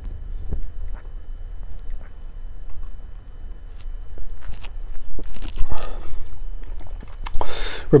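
A man drinking beer from a pint glass, swallowing in gulps with small wet mouth clicks. Near the end he lets out a breathy exhale.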